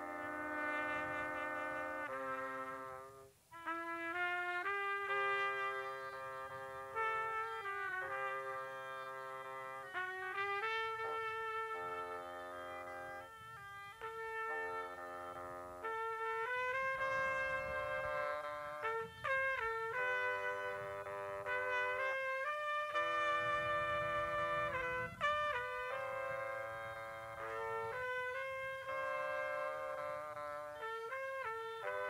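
A live wind trio of trumpet, bassoon and a third woodwind playing a piece together in held, overlapping notes, with a brief break about three seconds in.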